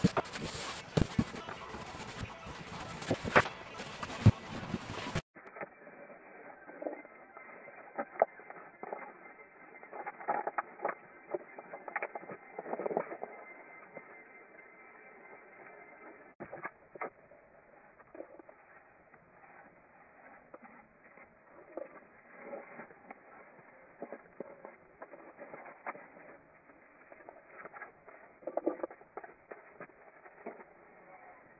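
Paintbrush working over plywood with handling noises: sharp clicks and knocks in the first few seconds, then softer, muffled, irregular scuffs and ticks.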